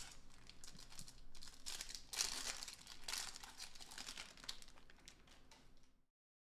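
Foil trading-card pack wrappers crinkling and tearing as they are handled and opened, in an irregular run of crackles that is loudest about two seconds in and again about a second later.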